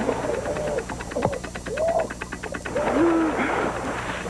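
A man's short, wavering cries of distress, each rising and then falling in pitch, repeated several times over a low steady hum. A fast run of rattling clicks sits under the cries in the middle.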